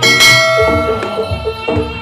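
Jaranan gamelan music. A loud metallic crash at the start rings and fades over about a second, over a repeating run of short pitched notes and drum beats.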